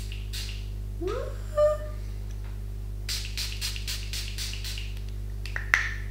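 Fine-mist setting spray pumped from a glass bottle toward the face: a quick run of short sprays about three to five seconds in. A steady low electrical hum runs underneath, with a brief rising tone about a second in and a sharp click near the end.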